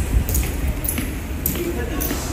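Honor guards' boots striking a hard stone floor as they march, several sharp, slightly ringing clacks about half a second apart, over crowd chatter.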